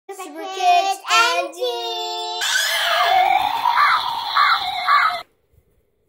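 Channel intro sting of children's voices: pitched, sliding calls for about two seconds, then nearly three seconds of high shrieking over a noisy wash with three repeated squeals, cutting off suddenly about five seconds in.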